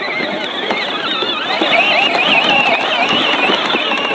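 Battery-powered Case IH ride-on toy tractor driving over rough dirt, its electric drive giving a continuous high-pitched whine that wavers in pitch.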